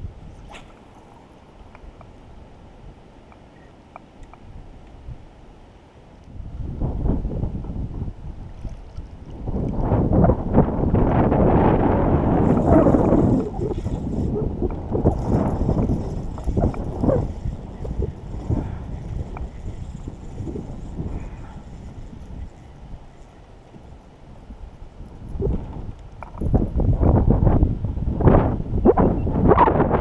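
Wind buffeting the microphone in gusts, a rough low rumble that rises about seven seconds in, is loudest a few seconds later, dies down and gusts again near the end.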